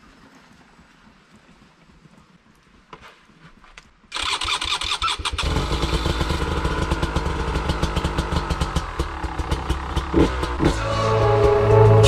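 Beta RR 300 two-stroke enduro motorcycle engine starting suddenly about four seconds in, then running with a rapid crackling beat and small rises and falls in revs.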